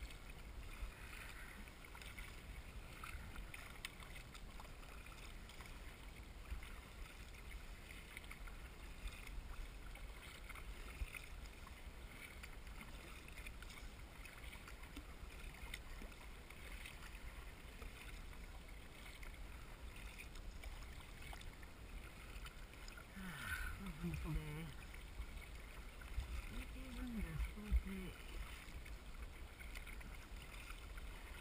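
Water splashing and rushing along the bow of a paddled kayak as it moves through choppy water, with a low steady rumble underneath. A person's wordless voice sounds briefly a few times near the end.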